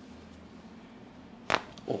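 A single sharp, loud crack from the neck about one and a half seconds in, as a chiropractor's hand thrust adjusts the cervical spine. It is the audible release (cavitation) of a neck joint.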